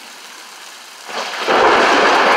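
Heavy rain falling with a steady hiss, then about one and a half seconds in a much louder, even rushing noise sets in and holds.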